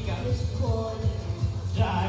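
Karaoke backing track with a heavy pulsing bass, and a male voice singing over it through a microphone and PA.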